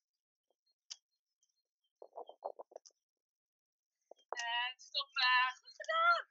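A person's voice making short wordless sounds: a quick run of about seven short pulses about two seconds in, then longer voiced calls near the end, with dead silence in between.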